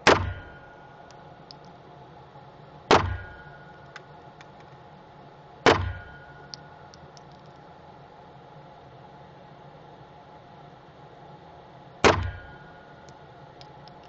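Four single pistol shots in an indoor shooting range: three about three seconds apart, then a longer pause before the fourth near the end. Each sharp crack dies away in a short echo off the range walls.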